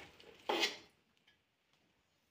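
A metal serving spoon scraping once against the side of a metal cooking pot about half a second in, a short clatter followed by a faint tick.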